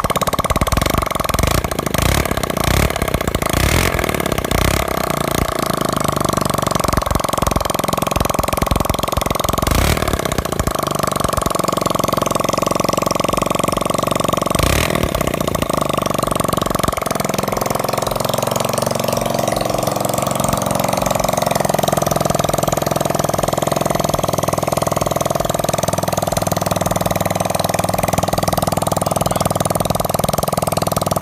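Single-cylinder four-stroke motorcycle engine, freshly converted from 70 cc to 100 cc, idling with a fast, even beat that grows smoother past the middle.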